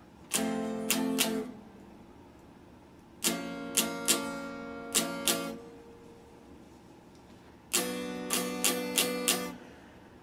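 Solid-body electric guitar strummed in three short bursts of chords, each a second or two long with several sharp strokes, and pauses between them.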